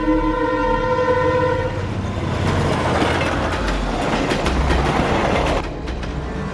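Passenger train horn holding a steady chord that stops about two seconds in. Then the train runs on, its wheels clicking over the rail joints, until the sound cuts off just before the end.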